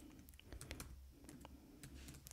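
A handful of faint, irregular keystrokes on a computer keyboard as a few letters are typed.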